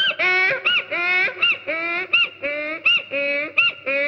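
A voice making rapid, repeated warbling calls, about four a second, each a short rise and fall in pitch: a comic vocal break within a film song.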